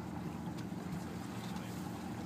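Boat motor running steadily, a low even hum heard from aboard the boat.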